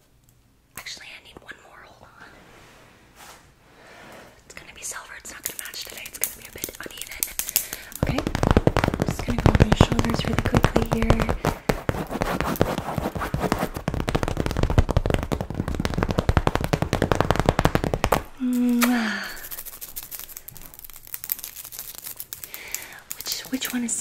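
Long claw-shaped nail covers scratching and tapping very fast close to the microphone: soft and sparse at first, then a dense, loud run of rapid clicking scratches for about ten seconds before easing off. Soft whispering comes and goes over it.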